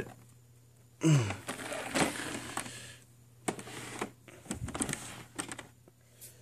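Handling noise: rustling, then a string of light clicks and knocks, over a faint steady low hum.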